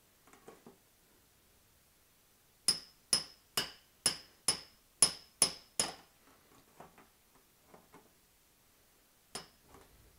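Brass hammer driving a brass punch against the tab of a fuel-tank sending unit's lock ring, knocking the ring round to seat it: eight sharp, ringing metallic strikes, about two to three a second, then a pause with a few light knocks and one more strike near the end.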